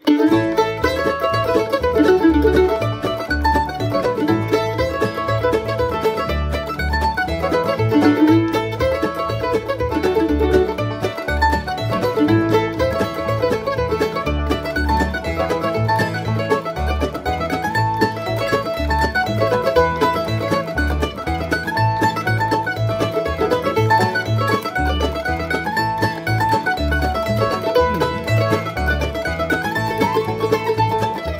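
A 1923 Gibson F5 mandolin playing a fast bluegrass fiddle-tune solo, flatpicked melody in quick runs of notes, over a backing track with a steady bass line underneath.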